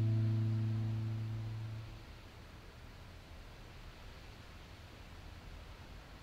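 Final chord on an electric guitar ringing out and fading away, dying out about two seconds in; after that only a faint steady hiss remains.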